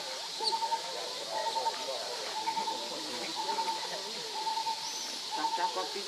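A bird repeating one short note about once a second, with distant people talking beneath it.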